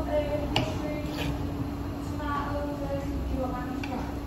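Indistinct voices talking in the background, over a steady low hum, with one sharp click about half a second in.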